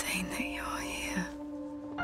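A whispered voice during the first second and a half, over a single sustained note of trailer music.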